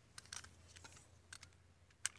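A few faint, light clicks and taps of small tools being picked up and handled by hand, over a quiet low hum.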